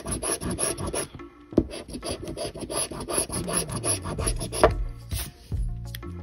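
A coin scratching the coating off a paper scratch-off lottery ticket in rapid back-and-forth strokes, with a short pause about a second in.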